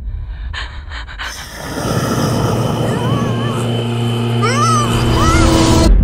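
A vacuum cleaner starts about a second in and runs with a steady hum, sucking the air out of a plastic bag. High, wavering whining cries rise and fall over it; the sound cuts off abruptly near the end.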